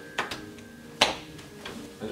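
Grand piano notes left ringing and fading after the playing breaks off, then stopped short near the end. A few sharp knocks sound over them, the loudest about a second in.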